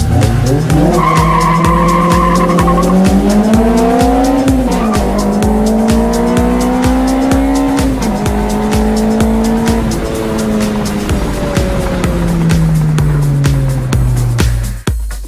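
Toyota Celica GTS's 1.8-litre 2ZZ-GE four-cylinder engine, with a straight-through exhaust and no catalytic converter, accelerating hard. Its revs climb and drop sharply twice, about five and eight seconds in, as it shifts up, then fall slowly as it eases off. Background music with a steady beat plays throughout.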